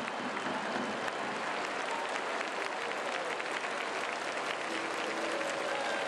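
Large baseball stadium crowd applauding steadily.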